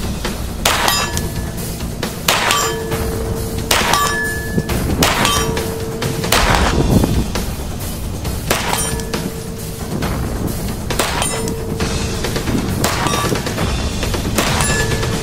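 Single shots from a CZ Scorpion EVO 3 S1 9mm pistol, fired at a slow, steady pace of about one a second. Several shots are answered by the brief ring of a steel target being hit.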